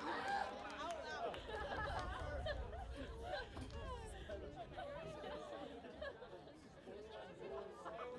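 Indistinct chatter of many overlapping voices from a sports crowd, with no clear words, and a low rumble for a few seconds in the middle.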